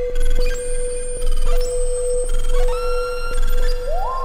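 Dreadbox Dysphonia semi-modular synthesizer playing a patched sound: a steady held tone, with higher tones switching in and out in steps, each change marked by a small click. Just before the end the pitch slides quickly upward.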